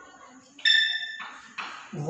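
Chalk on a blackboard: a sudden high squeak with overtones about half a second in that fades out quickly, then two short scratchy chalk strokes.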